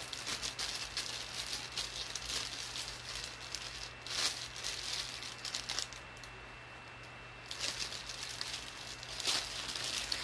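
Clear plastic bag crinkling and rustling as it is handled, in irregular crackles, with a short lull a little past the middle.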